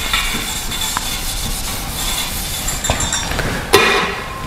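A handheld whiteboard eraser rubbing back and forth across a whiteboard in steady scrubbing strokes. A short, loud knock comes near the end.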